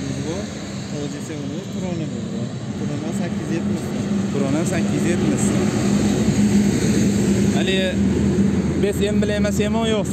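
Heavy dump truck's engine running as it drives past on the road, the steady drone growing louder through the second half. Voices talk in the background.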